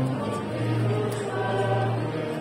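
A choir singing a slow sacred piece in long held notes, with a low note sustained through the second half.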